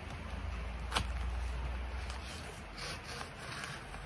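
Hands working at the paper-and-foil wrapping of a block of cigar tobacco to open it, with a sharp click about a second in and faint rustling later on.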